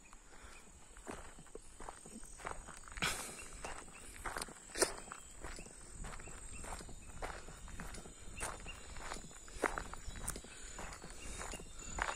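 Footsteps of a person walking on a dirt road, about one to two steps a second, irregular in strength.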